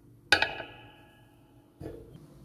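Graphite pencil set down on a hard desk surface: one sharp clack with a brief ringing fade about a third of a second in, then a duller knock near the end.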